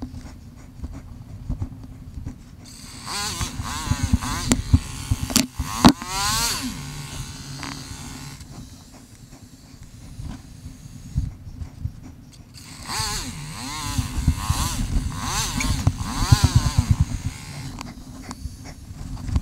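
KTM Freeride 350 dirt bike's single-cylinder four-stroke engine revving up and down in quick sweeps, in two spells about three and thirteen seconds in, and dropping back to a lower run in between. The riding sound is sped up four times, so the rev changes come fast, with knocks and thumps from the rough trail throughout.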